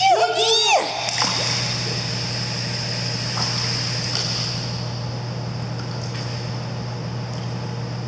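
Steady rush of a pool's water jet over a low, even hum, with a Doberman puppy wading and splashing in the shallow water.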